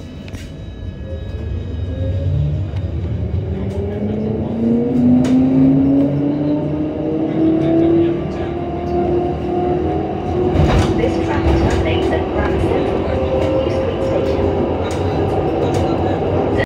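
A West Midlands Metro CAF Urbos tram pulling away from a stop, heard from inside. The electric traction motors' whine rises in pitch as it accelerates for about eight seconds, then holds steady at speed over the rumble of the wheels on the rails, with a cluster of knocks about ten seconds in.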